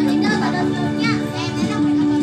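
Background music with long held notes, mixed with the chatter of children and young people's voices.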